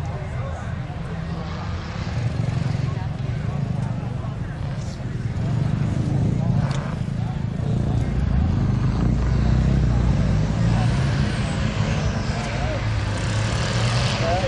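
Engine of an off-road racing pickup truck running as it drives the dirt course, a low rumble that grows louder about halfway through, with faint voices around it.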